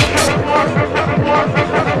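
Fast techno from a DJ mix: a pounding kick drum that drops in pitch on each hit, coming in a quick run of beats, over busy percussion and synth layers.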